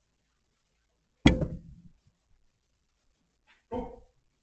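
Plastic pet-door flap swinging shut behind a kitten with one loud sharp clack about a second in, ringing briefly; a second, shorter and quieter knock follows near the end.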